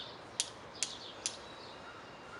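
A small bird chirping three times in quick succession, short high notes about half a second apart, over a faint steady outdoor hiss.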